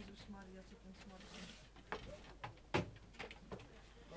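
Faint murmured voices, then a handful of sharp knocks and bumps from equipment being handled, the loudest about three-quarters of the way through.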